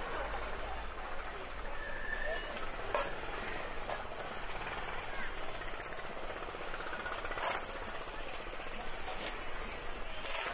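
Street ambience in a small cobbled town square: a steady background wash with faint voices and a few short sharp clicks or knocks, one about three seconds in, one about halfway, and one near the end.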